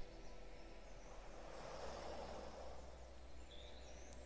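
Faint background nature track of birdsong over waves washing on a shore.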